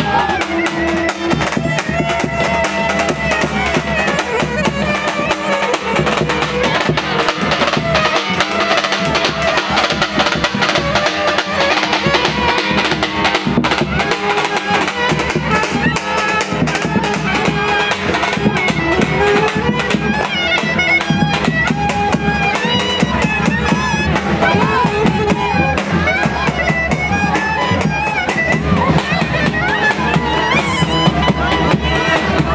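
Traditional street band playing: a reed wind instrument carries a winding melody over a steady beat on a large bass drum, with crowd chatter underneath.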